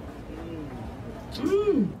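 A woman's drawn-out 'mmm' hums, a soft gliding one and then a louder one near the end that rises and falls in pitch, over a noisy background.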